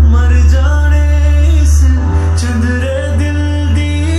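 Bass-boosted Punjabi pop song: a male voice sings over a heavy, steady bass.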